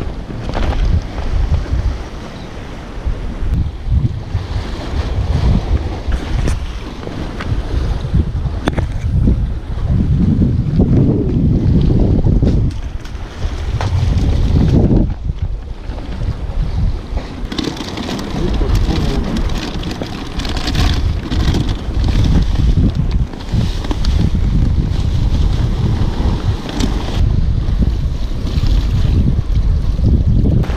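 Wind buffeting the microphone in gusts, over the wash of sea waves breaking against the concrete tetrapods of a breakwater.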